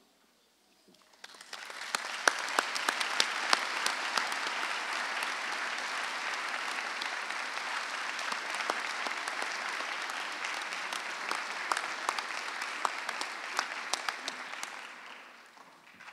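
Audience applause, swelling in about a second and a half in, holding steady with many individual claps, and dying away near the end.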